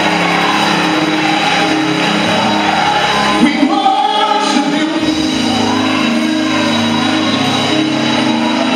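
Live gospel worship music: a band playing sustained chords with singing over it.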